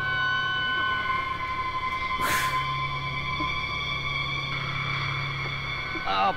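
Film soundtrack with held music tones over a low steady rumble, and a short burst of noise a little over two seconds in.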